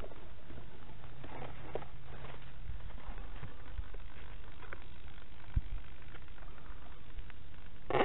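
Steady low noise with a few faint knocks, picked up by the foam RC plane's small onboard camera microphone as it is handled. Right at the end, the plane's electric motor comes in loud, with a pitched whine that glides.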